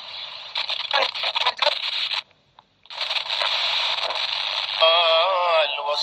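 ByronStatics portable AM/FM radio being tuned through its small speaker: static hiss broken by brief fragments of broadcast, a sudden drop-out about two seconds in, then a station with a singing voice coming in near the end.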